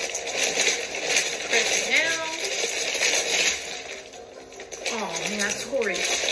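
Wrapping paper rustling and crinkling as it is folded and pressed around a gift box, with a voice heard briefly twice.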